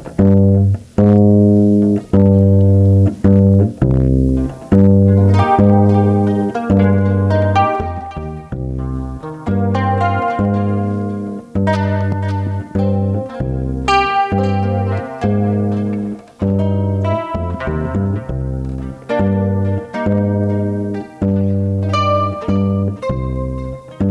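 Upright double bass plucked and an acoustic guitar playing an instrumental introduction as a run of plucked notes, the deep bass notes the loudest.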